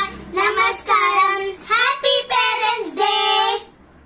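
A child singing a melody in short phrases of held notes, stopping about three and a half seconds in.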